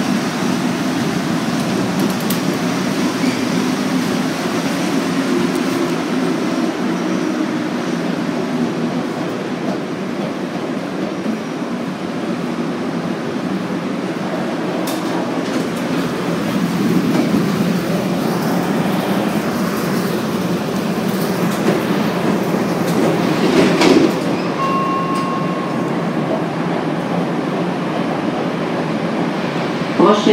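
Cabin noise inside a 1966 MR-63 rubber-tyred Montreal metro car in service: a steady rumble and hum. A sharp click comes about 24 seconds in.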